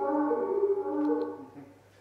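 A held chord of steady tones that fades out about a second and a half in, leaving near silence.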